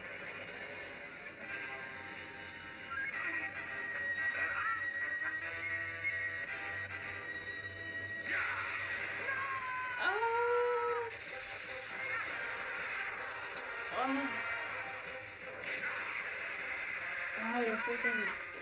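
Cartoon fight-scene soundtrack playing back: dramatic background music with characters' voices and bending cries, the clearest about ten seconds in.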